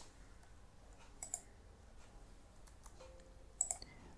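Faint computer mouse clicks: one at the start, a quick pair about a second in, and a short cluster near the end, over quiet room tone.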